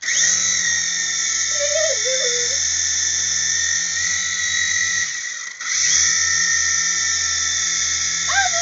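Small electric motor and rotor of a toy helicopter running with a steady high whine. It starts suddenly, cuts out for a moment about five and a half seconds in, then starts again.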